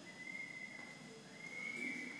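A faint, high, steady whistling tone that sounds twice, the second time a little higher and longer.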